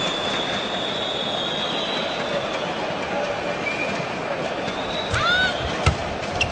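Steady arena crowd noise, with a long high whistle-like tone through the first two seconds or so. Near the end, short rising squeaks of court shoes and a sharp crack of a racket hitting the shuttlecock as a badminton rally begins.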